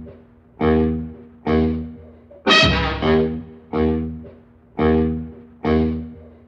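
Swing big band's brass section playing a series of short accented chords. Each chord is hit sharply and dies away, about one a second.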